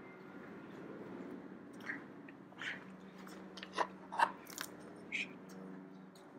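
Faint handling noises, a few light clicks and rustles, over a low steady hum of shop background.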